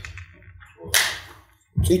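A single short swish of noise about a second in, coming on suddenly and dying away within half a second, over a faint low hum.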